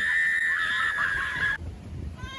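A woman's long, high scream, held on one pitch as the raft goes over the drop of a river-rapids ride, cutting off suddenly about one and a half seconds in.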